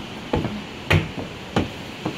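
Footsteps on wooden deck boards: three sharp footfalls, roughly two-thirds of a second apart, at a walking pace.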